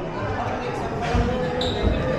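Dull low thumps of footsteps and camera knocks, picked up by a body-worn action camera as people walk across a hard lobby floor, twice clearly about a second in and near the end, over faint voices. A short high tone sounds about a second and a half in.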